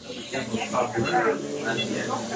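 Indistinct voices talking over a steady high hiss.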